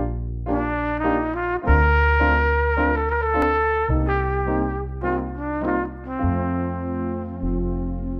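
Instrumental song intro: a trumpet melody over held low bass notes that change every second or two.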